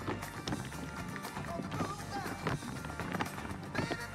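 Tap shoes striking a stage floor in quick, rhythmic runs of sharp clicks from a line of tap dancers in unison, over a recorded song with singing.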